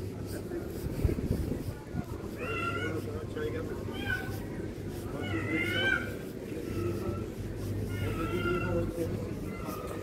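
A cat meowing four times, each a short wavering call a second or more apart, over a steady low background hum.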